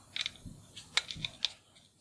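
A handful of light metal clicks and faint scraping as a dial test indicator's dovetail is slid by hand into a freshly cut dovetail clamp to test the fit.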